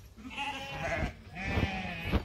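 A flock of crossbred ewes and lambs bleating, with two short stretches of calling about half a second in and again about a second and a half in.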